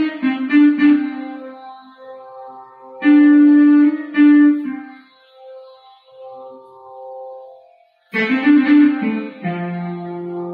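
Casio electronic keyboard playing an instrumental melody in raga Abhogi, phrases of held notes. It breaks off briefly about eight seconds in, then comes back fuller, with a low note held under the melody near the end.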